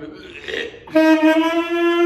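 Saxophone playing one long held note, starting about a second in, steady in pitch and loud.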